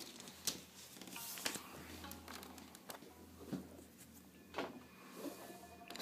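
Faint handling noise: a handful of scattered clicks and rustles as wires and parts are moved about inside an open 486 PC case and the phone filming it is shifted around.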